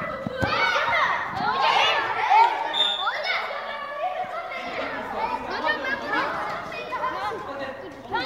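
Many children's voices shouting and calling over one another inside a large echoing hall, with a couple of short thuds near the start, likely the ball being kicked.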